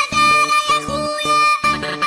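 Music with a steady, rhythmic beat and a repeating instrumental melody.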